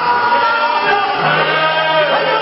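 Men singing a gospel song into microphones, amplified, with several voices singing together in held notes.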